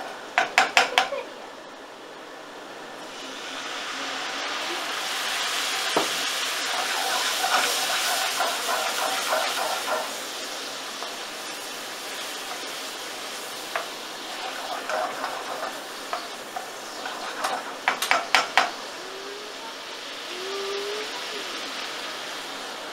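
Chopped onion frying in a pan, with a splash of white wine poured in so that the sizzle swells into a loud hiss that peaks a few seconds later and then settles. A wooden spoon stirs and scrapes the pan through it, and there is a quick run of knocks near the start and again near the end.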